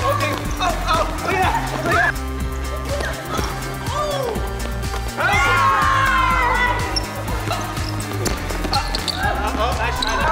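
A basketball bouncing on a gym floor during a pickup game, with players' voices calling out over background music with a steady bass line.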